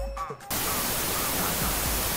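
Television static: a steady, even hiss from a TV receiving no signal, starting suddenly about half a second in.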